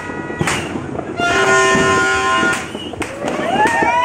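Firecrackers banging here and there amid New Year's Eve noise, with a steady horn blast about a second in that lasts over a second, and rising whistles near the end.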